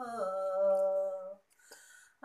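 A woman singing unaccompanied, holding one long note at the end of a line of a Tagin gospel song. The note slides down at the start and stops about a second and a half in, leaving a short pause for breath.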